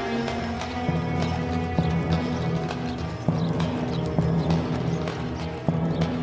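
Horses' hooves clip-clopping in irregular knocks over background film music.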